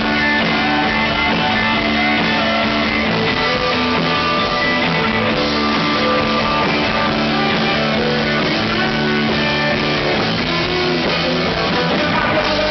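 Live rock band playing an instrumental stretch on electric guitars, bass guitar and drums, loud and steady.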